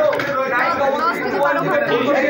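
Speech: several people talking at once, close to the microphones.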